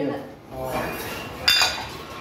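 Iron plates on a loaded squat barbell clinking and rattling as the lifter rises out of a squat, with one sharp ringing metallic clink about one and a half seconds in.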